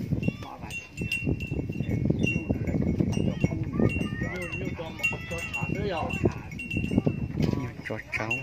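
Voices talking, with short, high ringing tones repeating many times over them, like a small bell or chime.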